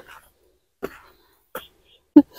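Faint sounds of someone climbing stone steps: three short puffs or scuffs about three-quarters of a second apart, in a walking rhythm.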